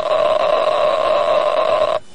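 Radiation survey meter (Geiger counter) responding to a piece of uranium or plutonium metal, its clicks so rapid that they run together into a steady rush that stops abruptly near the end. This is the sign of a high count rate: the metal is radioactive.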